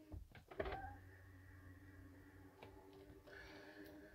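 Near silence: a faint steady hum with a few soft knocks in the first second.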